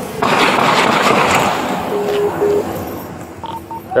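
Rough rustling and rubbing of clothing and gear against a body-worn camera as the wearer moves quickly, for about two seconds. Two short low electronic beeps follow, then two short higher beeps near the end.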